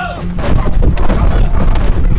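Action film soundtrack: a music cue gives way, about half a second in, to loud, dense, rapid booming hits that continue.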